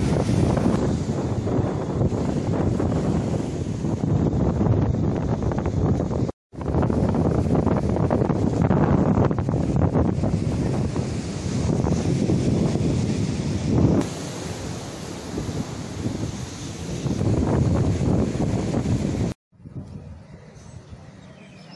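Wind buffeting the microphone over sea surf breaking on a rocky seawall, with rough swells in level. The sound drops out briefly twice, about six seconds in and just before the end.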